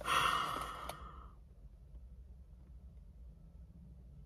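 A woman's audible sigh, a breathy exhale lasting about a second that fades out, with a small click near its end; then only faint low hum.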